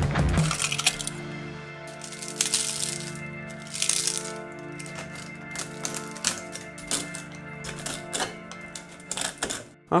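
Background music with sustained tones, over which come many sharp clicks and crackles of stiff 3D-printed plastic being worked: a print prised off the printer bed and its support material snapped away, with two brief scraping rushes a few seconds in.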